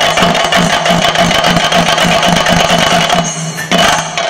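Chenda drums playing a fast, dense roll as accompaniment to a theyyam dance. The roll thins briefly a little past three seconds in, then comes back loud just before the end.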